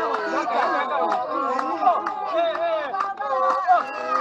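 Khwe San group singing a healing song: several voices overlapping and sliding in pitch, with frequent sharp hand claps.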